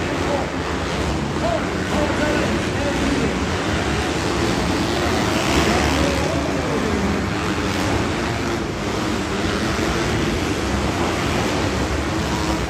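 Several dirt bike engines racing around an indoor arenacross track, heard from the stands as a steady, echoing wash of engine noise with the pitch rising and falling as riders go on and off the throttle.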